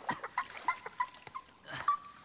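Water dripping and plinking into a bath: a scatter of short drips and small pitched plops, irregular and several to the second.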